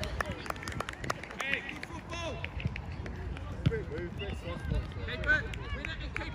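Scattered shouts and calls from young footballers and spectators, short high-pitched voices rather than continuous talk, over a steady low rumble, with a few sharp knocks.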